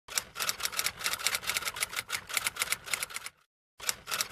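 Rapid, uneven run of sharp clicks, several a second, like keys being struck. It breaks off about three and a half seconds in, then a short burst of clicks starts again near the end.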